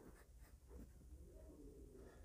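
Faint scratching of a pen writing on paper, a few light strokes as figures are written and a box is drawn round them.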